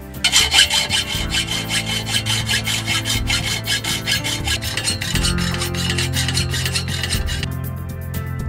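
Hacksaw cutting metal by hand: rapid, even rasping strokes that pause briefly near the end, with background music underneath.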